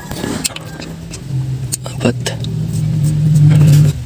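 A motor vehicle engine's low, steady hum, growing louder over a couple of seconds and cutting off abruptly near the end, with a few sharp metallic clicks of hand tools.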